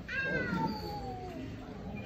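A high-pitched, drawn-out cry that slides steadily down in pitch over about a second and a half.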